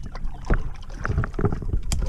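Irregular knocks, taps and rustles of handling aboard a kayak, several short sharp clicks among duller low thuds.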